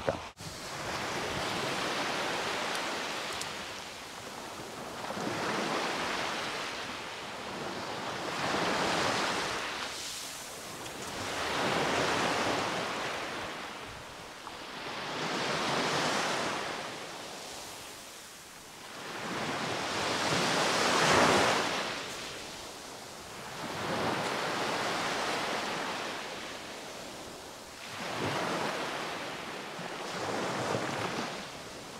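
Black Sea surf breaking and washing up a sand-and-shell beach, swelling and fading about every three to four seconds, with the loudest wave about two-thirds of the way through.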